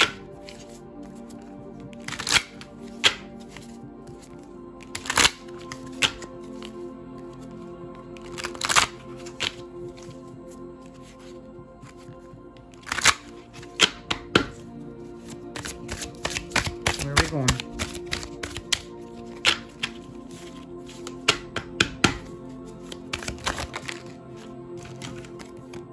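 A thick deck of oracle cards being shuffled by hand, giving sharp snaps and slaps of cards at irregular intervals, in a dense flurry in the second half. Soft background music with sustained tones runs underneath.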